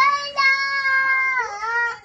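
A two-year-old boy singing in a high child's voice: one long held note that slides down in pitch about a second and a half in.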